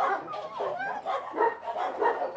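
Several shelter dogs barking and yelping in their kennels, a quick run of short, overlapping barks.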